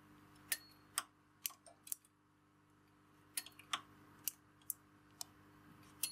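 Faint, irregular metal clicks, about nine scattered through, from a latch tool working against the hooked needles of a knitting machine while stitches are closed off along a lace edge. A faint steady hum runs underneath.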